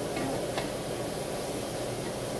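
Sliced mushrooms sautéing in lard in a hot skillet, a steady sizzle, with a wooden spatula stirring them and lightly knocking the pan a couple of times early on.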